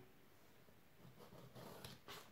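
Near silence, with a faint scratch of a pencil drawing along a steel ruler on cardboard in the second half.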